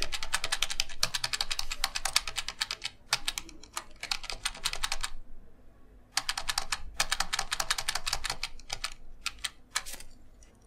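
Computer keyboard key pressed rapidly over and over, several clicks a second in runs, with a pause of about a second midway: repeated Ctrl+Z undo presses erasing drawn strokes one by one.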